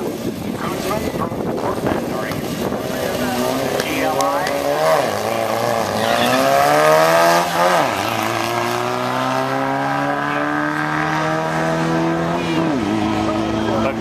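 Drag-racing cars launching from the start line. An engine revs up in a rising pitch through the gears, dropping sharply at each shift: about five seconds in, again a few seconds later, and once more near the end. It is loudest just before the second shift.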